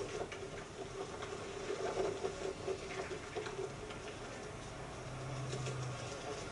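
Wildlife sound from a nature documentary playing on a TV: vultures squabbling and flapping their wings around a cheetah kill, in scattered scratchy clicks and calls, heard through the TV speaker. A low steady hum comes in near the end.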